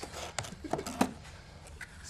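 Cardboard shipping box being opened by hand, its flaps pulled apart with a few sharp cardboard clicks and scrapes in the first second.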